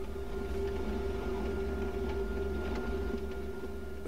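Kubota B2320 compact tractor's three-cylinder diesel engine running steadily under load while pulling a grading scraper through grass and gravel, a constant hum over a low rumble with no bogging or revving.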